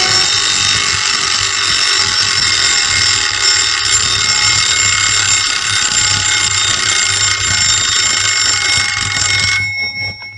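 A loud, continuous high ringing, alarm-like, on a film soundtrack. A low pulsing hum lies under it, and both cut off abruptly just before the end.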